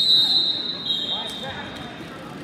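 Referee whistles at a wrestling tournament: one long, steady, high blast, joined about a second in by a second, slightly lower whistle, over background voices. A brief knock comes about a second and a half in.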